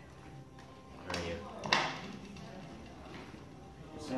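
Low room sound with a brief snatch of voice about a second in, ending in one sharp click.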